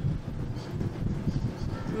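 Wind rumbling on the microphone, a steady low buffeting.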